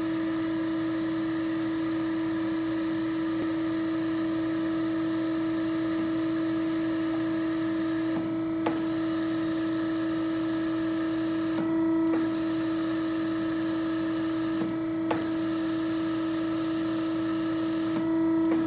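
Hydraulic trainer's pump unit running with a steady electric hum and one constant tone. A few sharp relay clicks come about nine and fifteen seconds in as the control buttons are pressed, and the hum shifts briefly around twelve seconds as the cylinder cycles.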